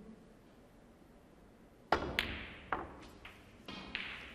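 Snooker balls knocking as a shot is played: a sharp knock about halfway through, then a quick run of four or five more clicks and knocks as the cue ball comes off the cushions.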